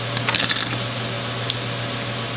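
A few light clicks and taps, bunched in the first half second with one more about a second and a half in, as a small craft tool and cardstock punch-outs are handled on a cutting mat, over a steady low hum.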